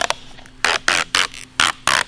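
Protective plastic film being ripped off a sheet of clear acrylic in quick jerks: five short, loud crackling tears in the second half.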